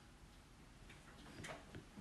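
Near silence with a few faint ticks of a stylus tip tapping on a tablet's glass screen during handwriting.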